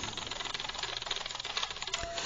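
Faint steady background noise: a hiss with a fine, rapid flutter running through it.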